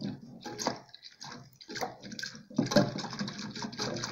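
Whisk beating cornstarch into cold milk in a metal pot: irregular sloshing and splashing strokes with light clicks of the whisk on the pot, busier in the second half.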